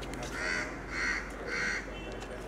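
A bird calling three times in quick succession, the calls about half a second apart.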